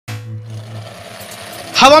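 Steady buzzing drone of a gyroplane's propeller engine, fading over the first second or so. A man's voice starts near the end.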